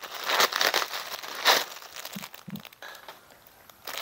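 Plastic bubble-wrap packaging crinkling and rustling as it is handled and pulled off a packaged raincoat. The rustles come in irregular bursts, loudest in the first couple of seconds, then thin out.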